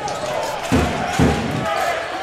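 A basketball dribbled on a hardwood court, with low bounces about half a second apart. Short sneaker squeaks and the murmur of the crowd in the hall sound around it.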